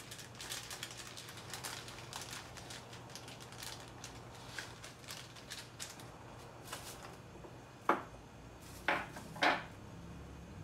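Kitchen handling sounds during cooking: a run of light clicks and rustles, then three sharper knocks near the end, over a low steady hum.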